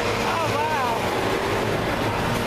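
Busy city street ambience: a steady wash of traffic noise with a low engine hum, and a brief snatch of a voice about half a second in.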